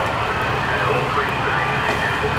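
A steady low vehicle-engine hum with indistinct voices over it.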